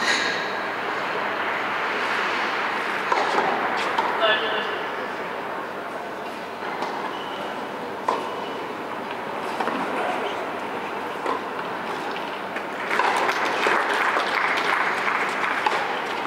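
Tennis ball bounces and racket strikes over a steady murmur of voices. The strikes come more often over the last few seconds, as a rally is played.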